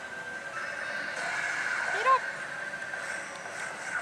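Pachislot machine electronic effects during a number roulette on its screen, over the steady din of a pachinko parlour, with one short rising sound about two seconds in.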